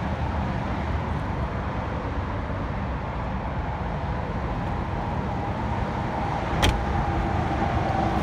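Steady low background rumble, then a single sharp thump about two-thirds of the way through as the trunk lid of a 2018 Toyota Camry XSE is shut.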